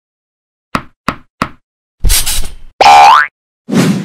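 Cartoon sound effects for an animated logo: three quick light taps, a short rush of noise, then a loud boing rising in pitch, and another rush of noise near the end.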